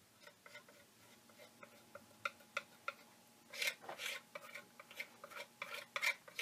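A tool scraping and tapping over wax-coated mulberry paper on an art board, smoothing the cold wax, pressing the edges down and working out bubbles. The short scrapes come a few a second, with a denser, louder run about three and a half seconds in.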